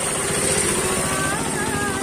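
A woman singing held, wavering notes over a motor vehicle's engine running close by. The engine is loudest in the first second, and her singing comes through clearly from about a second in.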